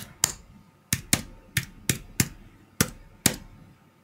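Keyboard keys tapped one at a time, about nine presses at an uneven pace, as a phone number is typed in. The presses stop about half a second before the end.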